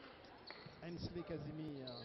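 Volleyball being struck in play: a sharp smack at the start and another about half a second in. This is followed by a voice calling out in a long, slightly falling shout.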